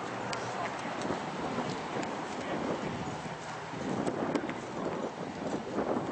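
Footsteps on pavement with irregular clicks and knocks, with indistinct voices in the background.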